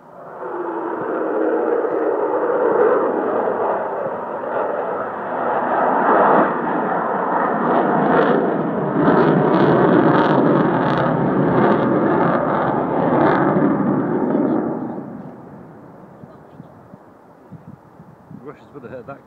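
Loud jet noise from the Avro Vulcan's four Rolls-Royce Olympus turbojets as the bomber passes over. It comes in suddenly, holds for about fifteen seconds, then fades as the aircraft draws away.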